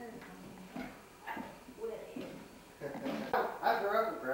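Indistinct conversational voices in a bare, unfinished room, quieter at first and louder about three seconds in.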